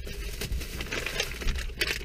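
Plastic shopping bag rustling and crinkling in short, irregular bits as hands rummage inside it and pull out a wrapped packet.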